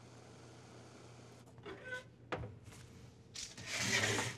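Quiet kitchen room tone with a low hum, then a few light clicks and knocks past the middle. Near the end comes about a second of rushing, rubbing noise as a metal baking tray is slid out of a deck oven with a cloth towel.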